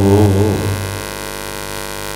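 A man's melodic Quran recitation, amplified through a public-address system, ends in a wavering held note a little way in. Then a steady electrical mains hum from the sound system fills the pause.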